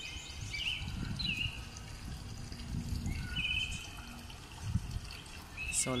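Small birds chirping outdoors: a few short calls early on and a brief trill about three seconds in, over a low, steady rumble of outdoor noise.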